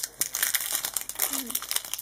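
A printed wrapper crinkling and tearing as it is peeled off a plastic surprise egg: a rapid, irregular run of crackles.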